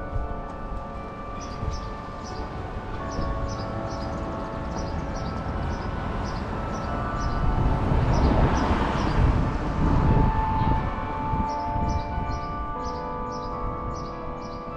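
Clock-tower carillon bells playing a slow tune, many notes ringing on and overlapping. Through the middle a louder rushing noise from passing traffic swells and fades under the bells.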